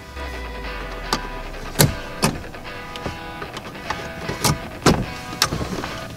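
Background music over a handful of sharp, irregularly spaced clicks as metal radio removal keys are slid into the slots of a Fiat 500's factory radio head unit.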